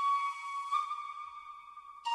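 Soft flute music: a long held note that moves to a slightly different note about three quarters of a second in, then fades away.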